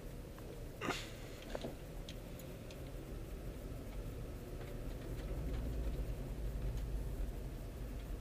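Inside the cabin, the low road rumble of a car rolling slowly over freshly slurry-sealed asphalt, with two sharp ticks about a second in from loose fresh asphalt flung into the wheel wells. A deeper rumble swells in the second half as another car passes close by.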